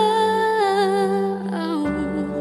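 Worship-song singing: a female voice holds one long wordless note with vibrato over a steady held accompaniment chord, then drops to a lower note near the end.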